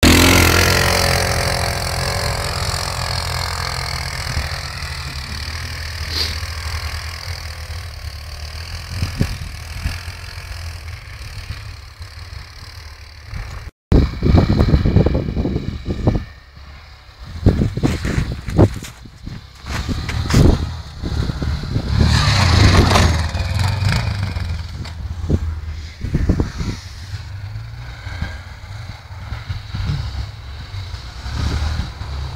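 Quad bike (ATV) engines running in the snow, loudest at the very start and fading over the next few seconds, then revving up and down in uneven bursts after a brief dropout about halfway through.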